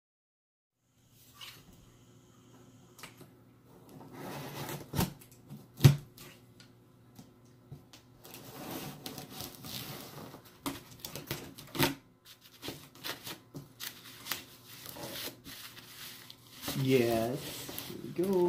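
Aviation tin snips working on a cardboard shipping box: irregular clicks, crunches and scraping as the blades snap and cut, with a sharp knock about six seconds in. A voice comes in near the end.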